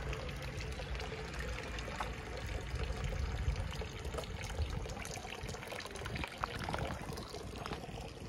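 Running water pouring and splashing steadily, with scattered footsteps on a path.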